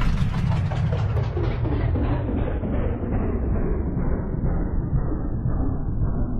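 A deep, steady rumbling sound added in editing, its treble steadily muffled away as a filter closes, so it grows duller throughout.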